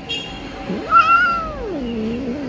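A long-haired kitten meowing while its tail is held: a short high call at the start, then one long drawn-out meow that climbs in pitch to its loudest about a second in and slides back down low.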